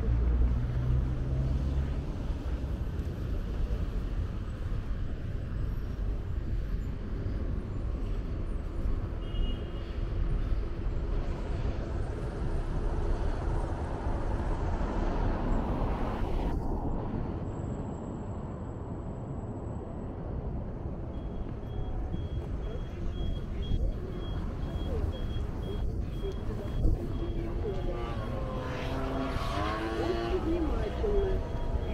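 City street traffic: cars running by on the road, with one car passing close about halfway through.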